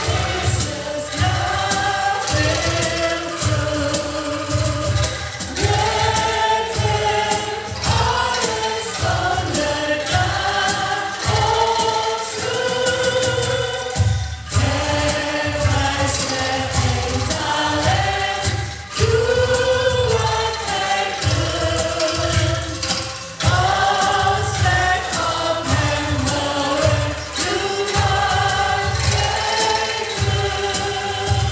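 A female vocal trio sings a hymn in harmony through microphones, accompanied by an ensemble of shaken bamboo angklung.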